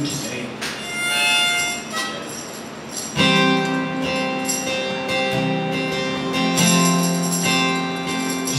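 Acoustic guitar and harmonica starting a song: a few short notes, then, from about three seconds in, held harmonica chords over the strummed guitar.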